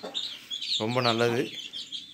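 Young chicks peeping in short high chirps around a feeding hen, heard near the start and again in the second half.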